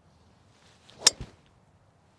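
A golf driver striking a ball off the tee: a short swish of the swing, then one sharp, loud crack of impact about a second in. The hit is called solid.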